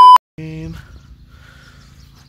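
Loud, steady 1 kHz test-tone beep of the kind that goes with TV colour bars, used as an edit transition. It cuts off abruptly right at the start.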